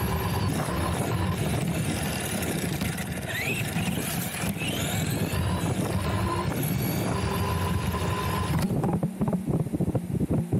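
Arrma Vorteks brushed RC truck driving fast on tarmac: steady electric motor and drivetrain whine over rough tyre rumble, the whine rising briefly twice around the middle. About nine seconds in, the mounted camera comes off and tumbles along the road with a run of loud knocks.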